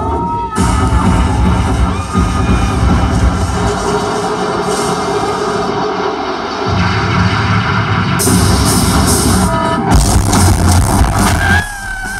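A rock band playing live through a loud festival PA, with guitars, bass and drums. The low end drops away for about two seconds midway, and the whole sound falls off suddenly just before the end.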